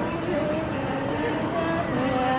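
Voices of people talking in the background, no words clearly made out, over a steady low clatter.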